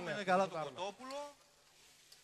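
A man speaking Greek for the first second or so, then a quiet stretch with only a faint steady low hum.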